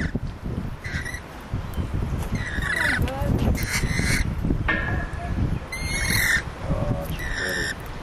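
Lorikeets screeching: short, harsh calls one after another about every second, over a steady low rumble.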